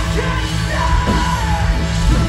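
Live post-hardcore band playing, with a male singer's held, shouted vocal line over distorted electric guitar and drums.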